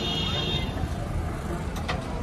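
Mahindra 265 DI tractor's diesel engine idling steadily. A brief high-pitched tone sounds in the first second, and a sharp knock comes near the end.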